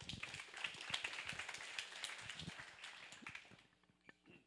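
Audience applauding, a dense patter of claps that thins out and stops about three and a half seconds in.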